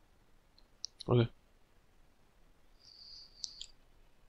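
A few faint, sharp clicks, some just before a spoken "okay" about a second in and two more near the end over a faint hiss.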